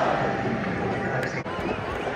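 Football supporters' crowd noise in a stadium: a general din from the stands in a lull between chants, with scattered knocks or claps.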